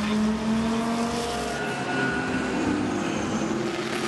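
Race car engine running at speed, a steady sustained note over road and track noise.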